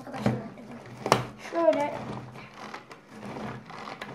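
Pull-cord manual food chopper being worked: two sharp clatters about a second apart as the cord is yanked and the blades spin through chopped fruit, with a brief voice just after.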